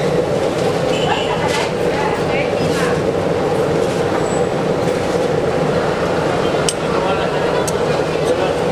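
Steady, loud noise of bread rolls deep-frying in hot oil in a stainless steel fryer, with a few sharp clicks near the end.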